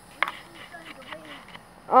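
A faint, distant voice of another person calling, after a single sharp click of handling noise about a quarter second in; close speech starts at the very end.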